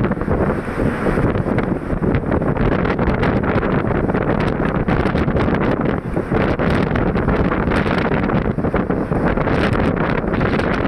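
Steady rushing wind noise on the microphone from a vehicle driving at speed, with road and engine noise underneath.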